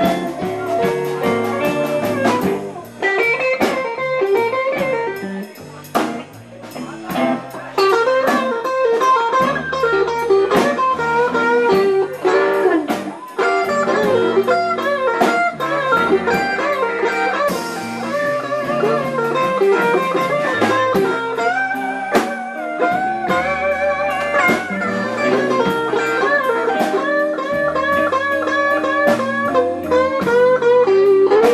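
A live blues band playing an instrumental minor blues, led by an electric guitar with bent notes over a walking bass line and a drum kit keeping time.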